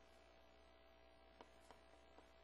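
Near silence: a faint, steady low hum with two faint ticks a little after a second in.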